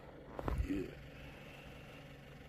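A faint, steady low hum of a vehicle engine idling, with a short spoken 'yeah' about half a second in.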